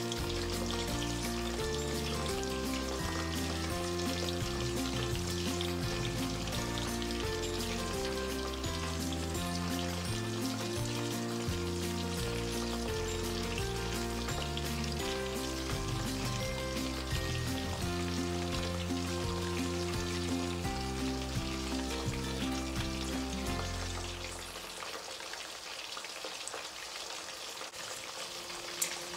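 Fish pieces frying in shallow hot oil in a pan: a steady sizzle with fine crackling. Background music plays over it and stops about 24 seconds in, leaving the sizzle alone.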